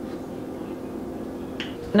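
Quiet kitchen room tone: a steady low background hum with no distinct event.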